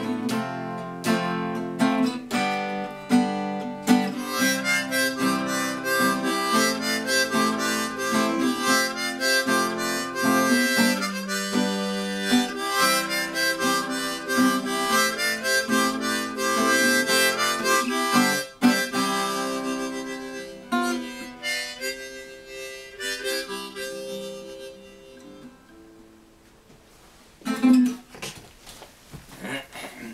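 Harmonica solo over a strummed acoustic guitar, an instrumental passage at the close of a song. The playing fades down over the last several seconds, and a single short thump sounds near the end.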